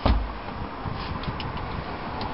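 A single thump as a hinged, padded seat lid over a boat's built-in cooler comes down shut, followed by steady background noise with a few faint ticks about a second in.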